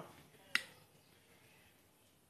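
A pneumatic brad nailer fires once, about half a second in: a single sharp snap as it drives a brad into the cedar frame of a birdcage.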